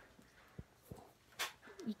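A few soft knocks and scuffs from a horse shifting in its stall, with one brief sharper noise about a second and a half in.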